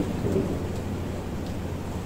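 Steady background room noise with a low hum, no distinct event.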